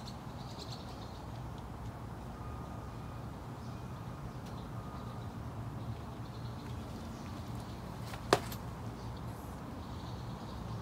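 Small wood-pellet fire burning in a tin stove, with one sharp pop a little past eight seconds in. Under it a steady low outdoor rumble and a few faint high chirps.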